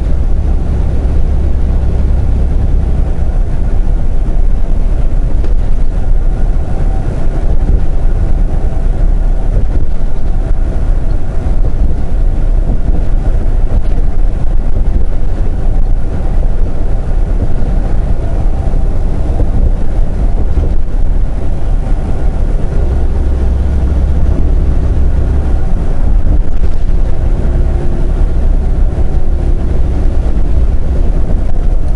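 Semi truck cruising on a highway, heard from inside the cab: a steady low engine drone mixed with tyre and road noise.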